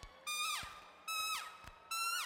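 Solo trumpet with no accompaniment: three short held notes, each ending in a quick downward fall in pitch, separated by brief gaps.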